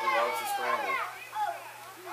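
High-pitched voices of spectators shouting and yelling excitedly during a football play, several at once, loudest in the first second and dying down toward the end.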